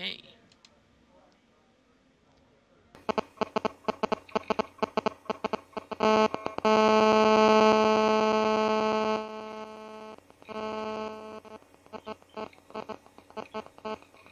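Phone-call audio breaking up. After a quiet start, rapid choppy fragments of sound begin about three seconds in. A steady electronic buzzing tone holds for about two and a half seconds in the middle, then more chopped-up fragments follow.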